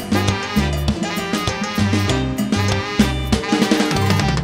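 Live tropical dance band playing an instrumental passage: a trumpet and two saxophones carry the melody over a stepping electric bass line, drum kit and congas.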